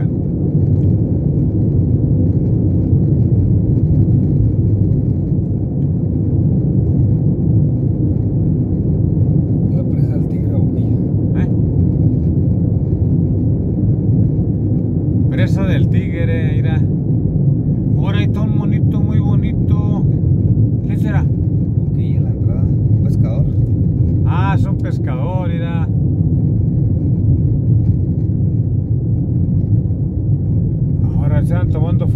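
Steady low road and engine rumble inside the cabin of a moving vehicle at highway speed. Fainter voices talk briefly a few times in the second half.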